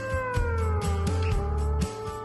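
Background music: a sustained note slides down in pitch about a second in, over a steady low beat.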